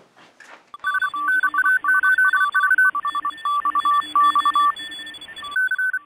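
Intro sound effect of radio tones: rapidly keyed electronic beeps switching between two pitches over a band of radio-style hiss. About halfway through the last second the hiss drops away and a single beeping tone keys on and off in a Morse-like rhythm.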